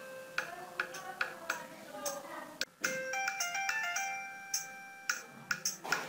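Mobile phone ringtone: a short melody of stepped electronic notes that breaks off about halfway and starts again, over steady ticking like a clock.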